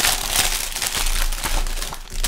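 Continuous crinkling of a trading-card booster's plastic-and-paper wrapping being handled and unwrapped by hand.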